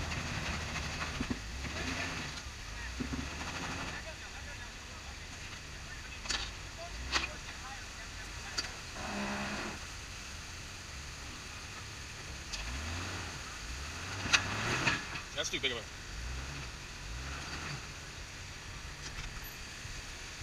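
Off-road vehicle engine running low and revving up about two-thirds of the way in as it tries to climb a rock ledge while hung up on its rear differential, with several sharp knocks along the way.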